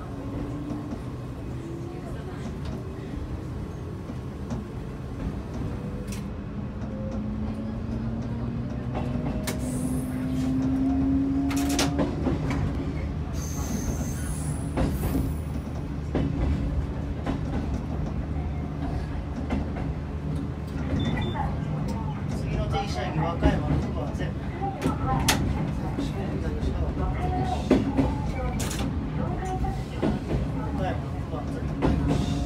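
Electric commuter train pulling away and accelerating. A motor whine rises steadily in pitch for about the first twelve seconds, then gives way to a steady running rumble with wheels clicking over the rail joints, heard from inside the cab.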